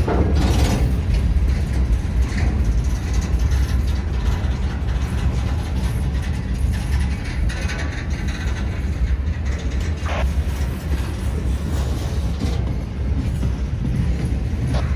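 Freight cars of a CSX manifest train rolling past: a steady low rumble of steel wheels on the rails, with a few brief metallic clanks.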